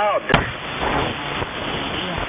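Shortwave receiver audio on the 80-metre amateur band around 3929 kHz: a steady hiss of band noise with a sharp static crash about a third of a second in.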